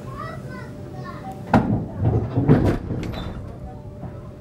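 A child's voice and other voices in a train carriage over the low rumble of the moving train, with a sharp knock about a second and a half in, followed by a loud burst of sound.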